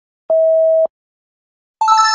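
Quiz-timer sound effects: a steady electronic beep lasting about half a second as the countdown runs out, then a bright chime near the end that rings on and fades, marking the correct answer.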